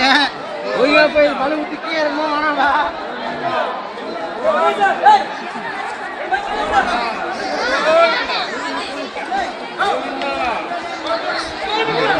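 Several people's voices talking over one another in continuous, overlapping chatter.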